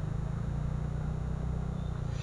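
TVS Ntorq 125 Race XP scooter's single-cylinder engine running steadily at low road speed, a low even hum.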